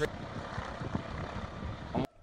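Steady rush of wind and road noise from onboard footage of a vehicle driving along a road, wind buffeting the camera's microphone; it cuts off abruptly near the end.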